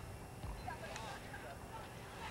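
Faint, distant voices of players and spectators over a low rumble, with a couple of light knocks.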